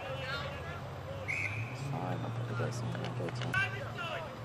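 Indistinct voices of spectators and players calling out across an outdoor football ground. There is a short high tone about a second in and a low steady hum through the middle.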